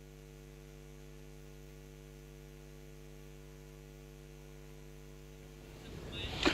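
Faint, steady electrical mains hum with no other sound over it.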